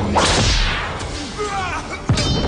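A sharp film-effect whoosh of a swung blow just after the start, its hiss sweeping down in pitch over about half a second. It is followed in the second half by a few short, bending, cry-like tones.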